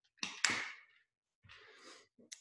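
Handling noise from a handheld microphone being fiddled with: two short rustling bursts just after the start, then a softer rustle near the end.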